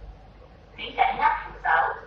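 A person's voice speaking in short phrases, starting about a second in, over a low steady hum.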